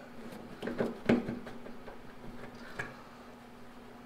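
A few small knocks and clicks as the fuel hose is tugged and worked off the sending unit on top of a steel gas tank, the sharpest about a second in, over a steady hum.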